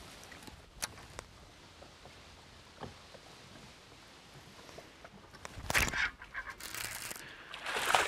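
A hooked largemouth bass splashing and thrashing at the water's surface, in loud irregular bursts starting a little past halfway. Before that there is only quiet water with a faint click or two.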